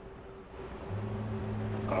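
Draft Guinness stout pouring from a bar's stout tap into a tilted pint glass: a growing hiss of nitrogenated beer running through the faucet. A steady low hum comes in about a second in.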